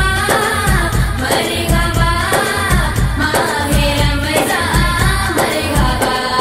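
A naat (devotional song) sung over a steady low beat of about two pulses a second.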